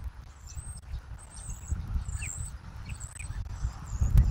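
Wind rumbling on an outdoor camera microphone in uneven gusts, with short, very high-pitched bird chirps repeating over it.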